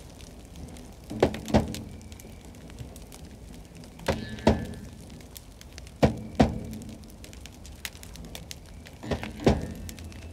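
A deep drum beaten in a slow ritual rhythm: four double strokes, the two hits of each pair close together, repeating every few seconds.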